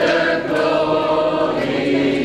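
A group of people singing together in long, held notes.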